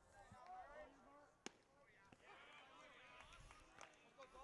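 Faint, distant voices of players and spectators at a baseball field, with a single sharp smack about a second and a half in.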